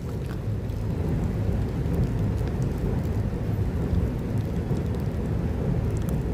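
Rain falling, a steady noise with a strong low rumble underneath.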